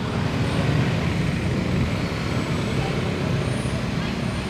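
Steady street traffic noise: a low, even rumble of road vehicles.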